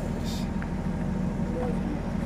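An engine idling steadily, a low even hum, with faint voices in the background.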